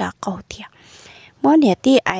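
Speech only: a voice narrating, breaking into a faint whispered, breathy stretch in the middle before speaking aloud again.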